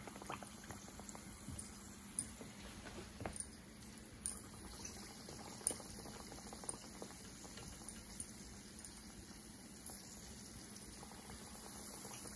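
Hot vegetable oil sizzling low and steady around battered potato slices deep-frying as pakoras in a frying pan, with a few short sharp pops through it.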